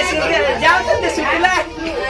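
Speech only: several voices chattering and overlapping.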